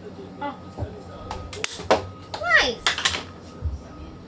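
A few short wordless voice sounds with falling pitch, with several sharp clicks and knocks from handling tools and wood between them. The drill is not running.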